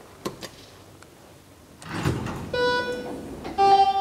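Elevator call button clicked, then the car arrives: the landing doors slide open with a rush of noise, and a two-tone arrival chime sounds, the second note lower than the first, signalling a car going down.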